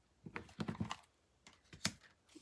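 Tarot cards being handled as one is drawn from the bottom of the deck: a run of light clicks in the first second, then one sharp card click near the end.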